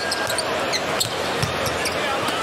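A basketball being dribbled on an arena's hardwood court, a few separate bounces, over the steady noise of a large arena crowd.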